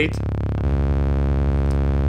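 Behringer RD-8 drum machine's low tom retriggered by note repeats so fast that the hits merge into a steady buzzing bass tone. About two-thirds of a second in, the repeat rate goes up to 8 per step and the tone shifts to a different note with a sawtooth-like buzz.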